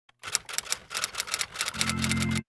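Typewriter keys clacking in a quick, irregular run of sharp strikes, several a second, as a title types itself out. Near the end a steady low pitched tone comes in under the clicks.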